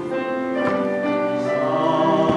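A man singing a slow Korean Christian song solo, holding long notes.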